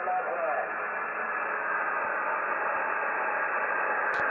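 Steady receiver hiss from a radio transceiver's speaker on an open sideband channel, narrow and muffled with no highs, after a brief fading scrap of a distant voice at the start.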